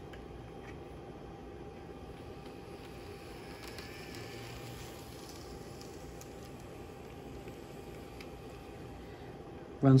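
Small electric motor and gearing of a Kato-built Atlas N scale SD7 model locomotive whirring faintly as it rolls past at low speed, swelling in the middle and fading as it moves away, over a steady background hum. It runs smoothly, like a sewing machine.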